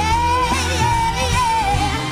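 A woman singing a Christmas pop song, holding long notes with a gentle wavering vibrato over a full band backing with a steady low beat.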